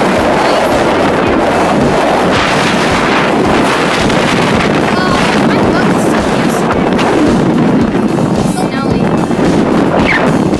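Wind buffeting the phone's microphone, a loud, steady rush that does not let up.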